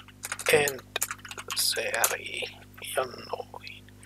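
Computer keyboard keystrokes as a short command is typed, a few separate clicks, with a man's voice muttering between them.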